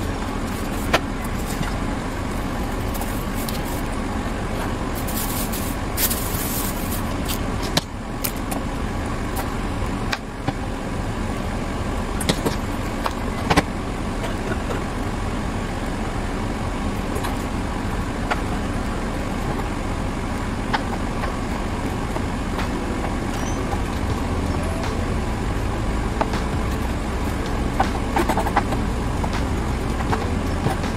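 Steady background rumble with scattered sharp taps of a knife on a cutting board as lemon and garlic are cut, including a few quick knocks near the end.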